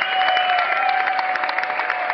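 Concert audience clapping and cheering after a song ends: dense, steady applause with a few long, high held tones ringing over it.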